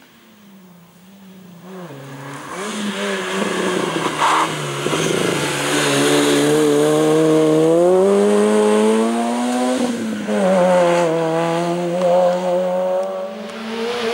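Peugeot 106 hill-climb car's four-cylinder engine at racing revs, growing louder as it approaches. The engine note climbs steadily under acceleration, dips sharply about ten seconds in, then climbs again.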